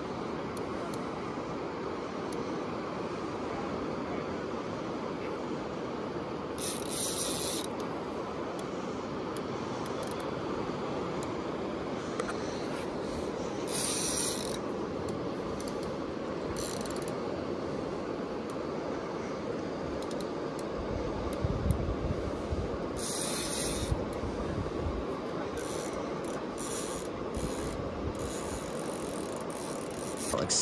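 Fishing reel's drag clicking out in bursts about a second long, several times, with a cluster of short bursts near the end: a hooked white sturgeon pulling line off against a heavy rod. A steady rushing noise runs underneath, with a few low knocks past the middle.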